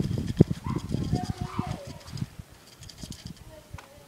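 Corrugated plastic drainage pipe being shifted about on grass: a run of knocks and rustles over about the first two seconds, then quieter.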